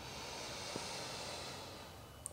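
A woman's long, deep inhale: a faint hiss that swells and then fades over about two seconds.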